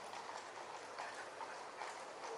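Faint clip-clop of horses' hooves on a paved road as a mounted escort walks alongside a car.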